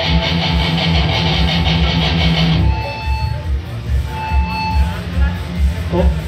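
Amplified electric guitar played during a soundcheck: a rapidly picked riff for the first two and a half seconds, then thinner, with a few held notes. Low thumps repeat underneath throughout.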